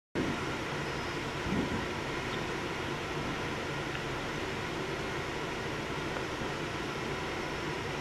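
Steady rushing noise with a low hum from a Falcon 9 launch pad in the last minute before liftoff, with a brief swell about a second and a half in.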